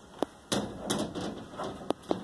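A sharp click, then a short burst of rustling and knocking from about half a second in, and another sharp click near the end.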